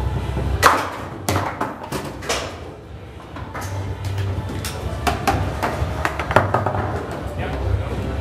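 Foosball table in play: the ball struck by the plastic figures and knocking against the table walls, with rods and figures clacking, a run of sharp knocks at irregular intervals, the loudest under a second in.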